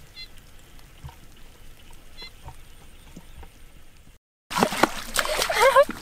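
Faint small water sounds and light ticks in a shallow flooded rice paddy, with two short high chirps. About four seconds in, after a cut, loud splashing in muddy water and excited shouting start as men grab fish by hand.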